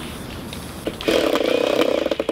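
Cordless drill-driver running steadily, starting about a second in, driving a screw through a wooden batten into a plastic stool leg; the screw struggles to bite into the plastic.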